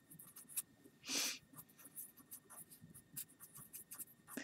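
Faint scratching of a wet-erase marker tip on paper as letters are written, in many short strokes, with one longer, louder stroke about a second in.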